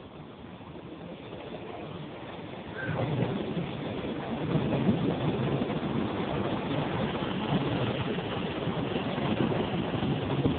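Electric passenger train pulling into a station platform. Its rolling noise grows louder until the front of the train reaches the listener about three seconds in, then holds steady as the cars pass close by.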